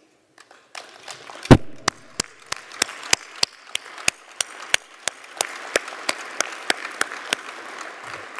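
Audience applauding, starting just under a second in, with one clapper close to the microphone standing out in sharp, fairly evenly spaced claps, the loudest about a second and a half in.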